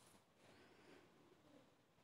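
Near silence: the sound track is all but empty.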